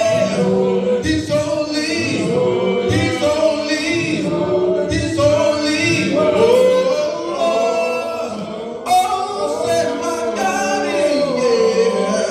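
Several voices singing a gospel song together in parts, holding long notes between phrase breaks.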